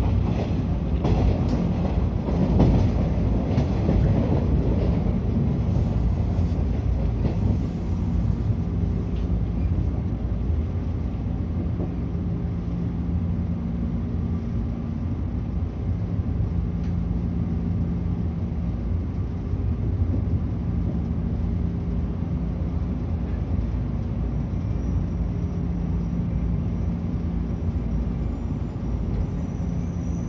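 JR 113-series electric train heard from inside the carriage, running and slowing toward a station stop: a steady rumble of wheels on rail, loudest in the first few seconds and then easing off, with a steady low hum coming in about twelve seconds in.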